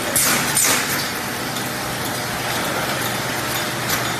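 Automatic sachet cartoning machine running steadily, a continuous mechanical noise with a faint low hum. Two short, loud hisses come in the first second.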